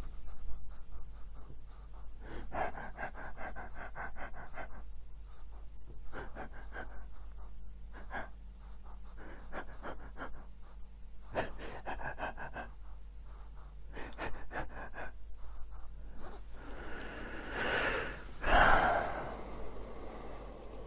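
A dog sniffing close to the microphone in short bouts of quick, breathy pulses every second or two, with a louder, longer stretch of breathing noise near the end.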